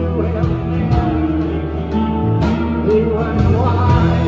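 Live band playing a song: strummed acoustic guitar over keyboard, bass and drums, with a man singing lead.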